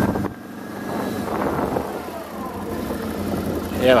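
Can-Am Outlander 1000 ATV's V-twin engine running low and steady as the quad rolls slowly along, a quiet even hum.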